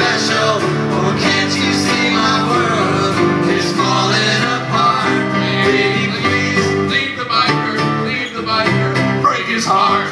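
Live band music: a strummed acoustic guitar and piano, with voices singing.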